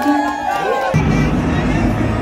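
Music with several voices singing. About a second in it cuts abruptly to a steady low din with a held low tone.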